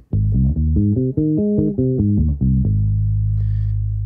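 Five-string electric bass playing an A-flat major arpeggio over two octaves. The notes are plucked one by one, climbing and then coming back down, and it ends on a low note that rings for over a second.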